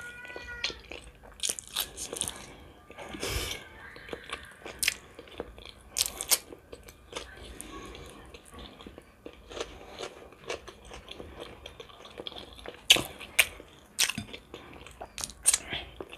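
A person chewing and biting close to the microphone: head cheese and lavash flatbread, with irregular wet mouth clicks and a few sharper crunchy bites scattered through.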